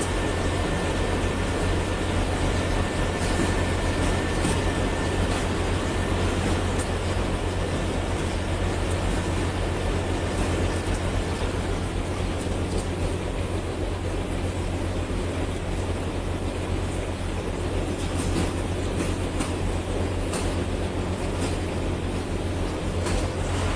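Cable production-line machinery, most likely the cable extruder line, running steadily: a strong low hum under dense mechanical noise, with scattered faint clicks.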